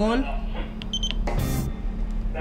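A short, high key-press beep from the keypad of a JRC NCT-196N DSC modem about a second in, over a steady low hum from the radio console.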